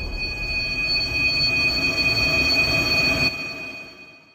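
The end of a dark background music track: held high-pitched tones over a noisy wash, dropping in level a little past three seconds in and fading out.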